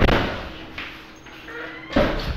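Low rumbling handling noise from a handheld camera being carried through a room, with a sharp thump just before the end and a faint steady hum underneath.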